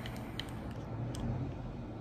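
Two faint small ticks from a glass dropper bottle's cap being unscrewed by hand, over a low steady background hum.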